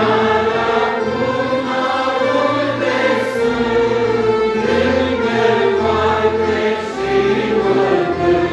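A Christian hymn performed live: voices singing together over a band of accordions, clarinet, trumpet, electronic keyboard and acoustic guitar.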